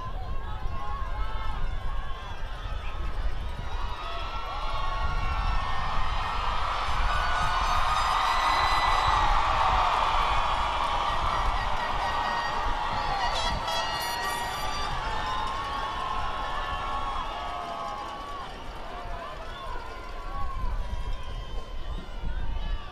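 A large crowd cheering and calling out, many voices overlapping, swelling to its loudest about eight to ten seconds in, over a low rumble.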